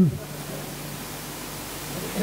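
Steady background hiss with no speech; the last spoken word dies away just at the start.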